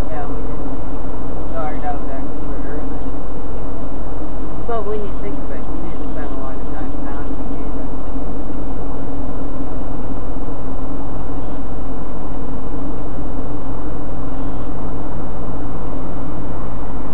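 Steady road and engine noise inside a car cruising at highway speed, recorded by a dashcam, with faint talk from the occupants in the first half and briefly near the end.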